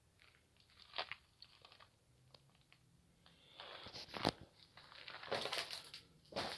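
Faint footsteps crunching on gravel, scattered at first and closer together in the second half, with one sharper click about four seconds in.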